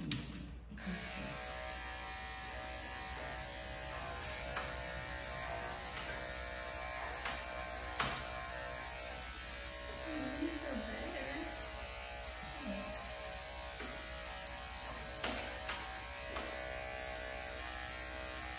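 Electric dog grooming clippers switch on about a second in and run with a steady hum as they shave a shih tzu's leg and foot close, with a few light clicks as the blade works through the coat.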